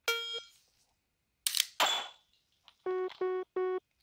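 Phone dry-fire training app sounds its start beep, then about a second and a half later an AR-15-style rifle's trigger is dry-fired with a sharp click and a second snap right after. Near the end the app plays three short beeps as it registers the shot.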